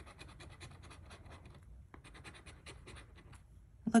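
A coin scratching the coating off a paper scratch-off lottery ticket in rapid short strokes, in two runs with a brief pause about two seconds in.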